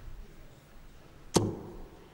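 A single steel-tip dart striking a Unicorn Eclipse Pro bristle dartboard, one short sharp thud about a second and a half in, over a low background hush.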